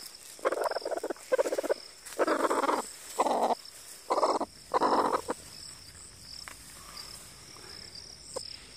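A broody hen growling on her nest: six harsh, croaking grumbles, each about half a second long, spaced roughly a second apart, stopping a little after five seconds in. It is the warning growl of a setting hen guarding her eggs against a close approach. A faint, steady high insect whine runs beneath.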